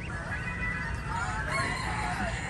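Young poultry, chicks and ducklings, peeping and calling together, with a longer rising call about a second in.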